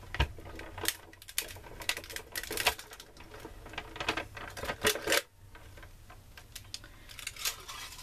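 Hand-cranked Cuttlebug die-cutting machine being turned, its rollers pressing a plate sandwich with a die and a thin piece of aluminum soda can through, with a run of irregular clicks that stops about five seconds in. Softer clicks of the plastic plates being handled follow near the end.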